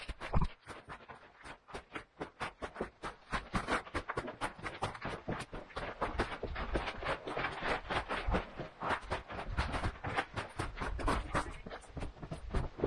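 Footsteps scuffing and crunching on gritty rock and gravel, with rustling, in a fast, uneven string of short scrapes.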